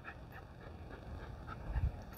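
Faint sounds from a small dog as it jumps about on a leash, with a low thump near the end.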